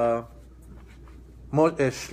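A man's voice trails off on a drawn-out "uh", then after a pause of about a second with faint handling of papers, he speaks again.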